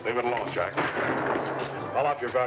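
Repeated gunshots of a gunfight going on all through, with men's shouting voices mixed in.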